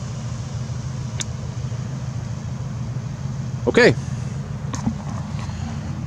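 Steady low hum of an idling vehicle engine, with a faint click about a second in.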